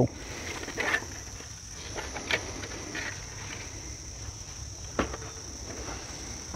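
Crickets singing steadily in the background as one continuous high trill, with a few faint clicks and rustles, one sharper tick about five seconds in.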